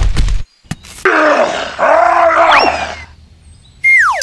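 A low rumbling burst cuts off just after the start. About a second in comes a cartoonish groaning, grunting voice effect lasting about two seconds, with the pitch arching up and down. A high tone sounds right at the end and begins to fall steeply, like a slide whistle.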